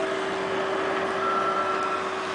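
Heavy construction machinery running: a steady mechanical drone with a constant humming tone, joined about a second in by a higher steady whine.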